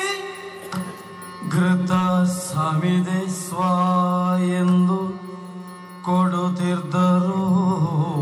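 Yakshagana music: a singer chanting a verse in long held notes with a wavering ornament, in several phrases with short breaks, over a steady drone.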